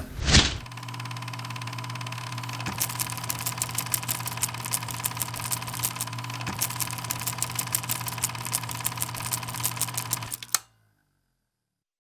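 A short loud sound at the very start, then a steady mechanical clatter of rapid, regular clicks over a low hum and a steady high tone, which cuts off suddenly about ten and a half seconds in.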